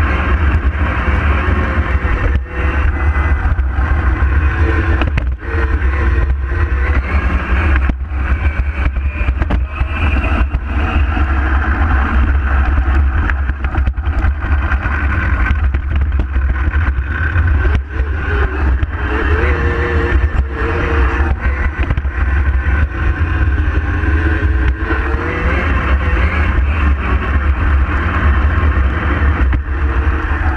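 Onboard sound of an electric power-racing kart at speed: a motor whine that rises and falls with speed over a heavy rumble of wind and vibration, with scattered knocks.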